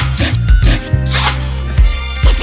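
Hip-hop beat with a deep, steady bass line and drum hits, cut with repeated turntable scratches that sweep quickly up and down in pitch.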